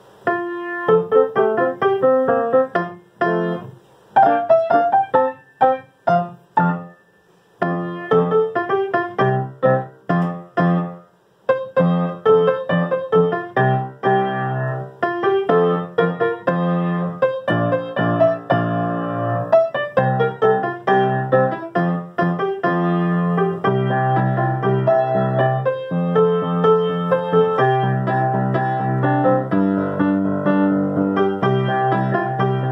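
Solo piano playing a song accompaniment with the vocal melody worked into the right hand. It starts about half a second in with short phrases and brief breaks, then plays on continuously with a fuller bass.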